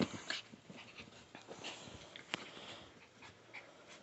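A Chihuahua playing with a plush toy, pawing and mouthing it: soft rustling and scattered short clicks. The sharpest come right at the start and a little over two seconds in.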